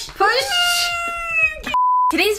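A long cry that falls slightly in pitch, then near the end a short, pure, steady test-tone beep of the kind that goes with TV colour bars.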